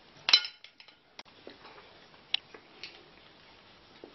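Mussel shells clinking against a stainless steel pot and against each other as they are picked out by hand: one sharp, briefly ringing clink near the start, then a few lighter clicks.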